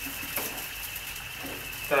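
Onion, garlic and tomato base with tomato puree cooking in vegetable oil in a pan, sizzling and bubbling softly, with a faint click or two. A steady high-pitched whine runs behind it.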